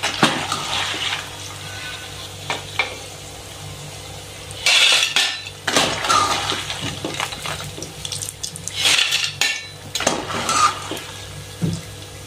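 A perforated steel skimmer scraping and clattering against a steel pan in bursts as deep-fried banana chips are stirred and lifted out of the hot coconut oil. The oil keeps up a steady frying sizzle underneath.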